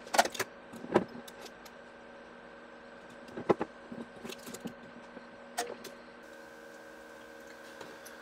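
Sharp clicks and small knocks of hand tools and electronic parts being handled and set down on a wooden desk during circuit-board soldering, a few separate strikes over a steady electrical hum.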